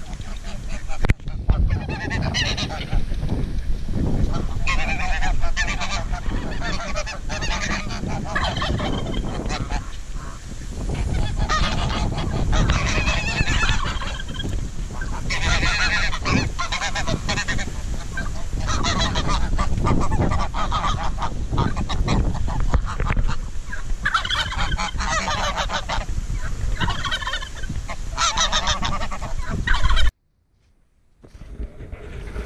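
A flock of domestic geese honking again and again, many calls overlapping, as they crowd around to be fed.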